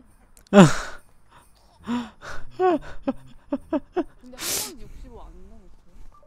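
Women's voices from the show: a loud breathy exclamation with a falling pitch about half a second in, then quick talk with short clipped syllables, and a second loud breathy gasp about two-thirds of the way through.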